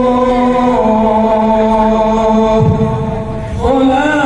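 Shalawat chanted in long held notes that step down in pitch about a second in; a short dip near the end, then the next phrase begins on a rising note.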